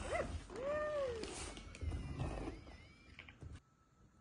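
Sphero R2-D2 toy droid beeping and whistling from its speaker: two rising-and-falling warbles, then higher gliding whistles, a few clicks, and quiet from about three and a half seconds in.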